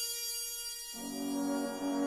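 Slowed-down, reverb-heavy orchestral soundtrack music: sustained high tones, then a low, full held chord enters about a second in and grows louder.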